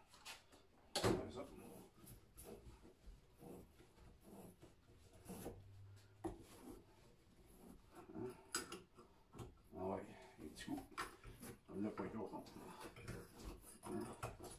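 A car battery being handled and shifted on a plywood workbench: a sharp knock about a second in, then scattered lighter knocks and rubbing.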